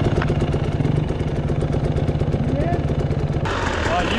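Dirt bike engine idling steadily with an even, fast beat, the motorcycle stopped at an enduro checkpoint.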